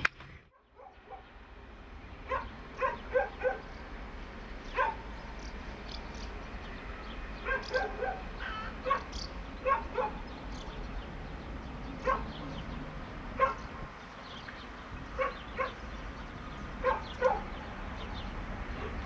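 Short, pitched animal calls, often two or three in quick succession, repeating every second or two over a steady low background rumble.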